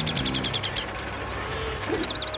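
Cartoon baby birds chirping in a fast, even run of high peeps, about ten a second, which stop a little under halfway through. A soft rushing hiss follows, over quiet background music.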